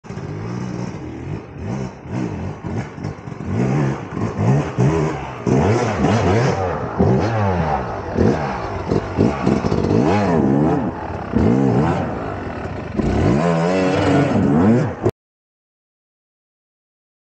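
Two-stroke Yamaha enduro dirt bike engine revved again and again, its pitch rising and falling with each burst of throttle as the bike is forced up a rocky climb. The sound cuts off suddenly near the end.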